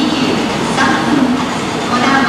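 Steady noise of a 700 series Shinkansen standing at a station platform, with a voice running over it.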